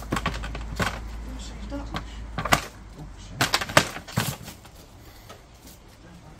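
Knocks and scuffs of a person clambering in through a window over a brick sill, with a cluster of sharp knocks in the middle.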